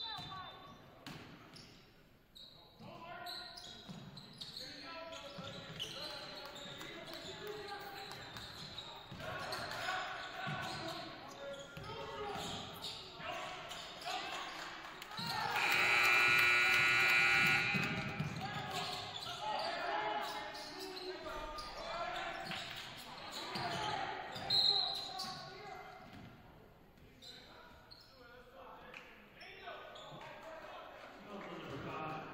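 Basketball dribbled on a wooden gym court, with players' and spectators' voices echoing in the hall. A loud, shrill stretch comes about halfway through. A short, high referee's whistle blast comes near the end.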